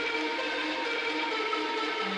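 Dark trap instrumental in a drumless break: sustained synth pad tones held steady, with no drums or beat.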